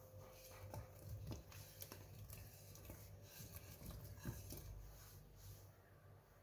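A scatter of faint, soft knocks as cut tomato pieces slide from a bowl and drop into an aluminium pressure cooker.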